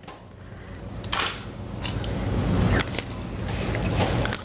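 Metal forks clicking and scraping against a glass baking dish as pieces of cooked fish are picked out, a few sharp clicks over a low rumble of handling noise that grows louder.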